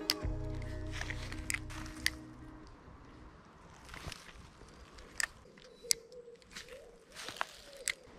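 Background music fades out over the first two seconds or so. Then come a scattered handful of sharp clicks and knocks from handling an ultralight spinning rod and reel during casting and retrieving.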